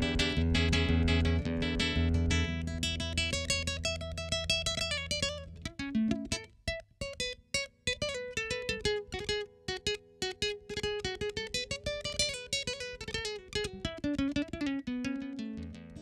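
Solo classical guitar played fingerstyle. For about the first five seconds it plays a full passage of plucked chords over ringing bass notes, then it thins to sparse single notes picking out a melody.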